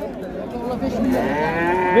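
A calf mooing: one long drawn-out call that starts about halfway in, rising and then falling in pitch.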